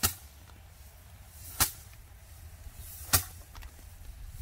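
Bundle of harvested rice stalks, gripped in a pair of threshing sticks, beaten against a slanted wooden board to knock the grain loose: three sharp whacks about a second and a half apart.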